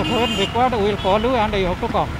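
A man speaking into microphones, with road traffic passing behind.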